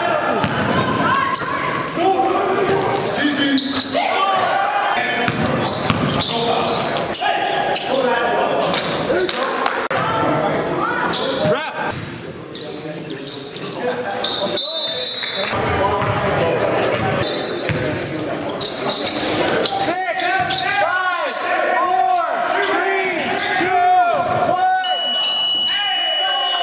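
Live basketball game sound in an echoing gym: a ball dribbling and bouncing on the court, sneakers giving short high squeaks, and players' voices calling out over it.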